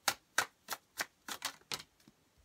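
A deck of tarot cards being overhand-shuffled by hand: each packet of cards is dropped onto the deck with a sharp, brief slap, about three a second, seven in all.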